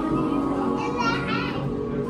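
Children's voices, with one high-pitched child's call about a second in, over steady background music.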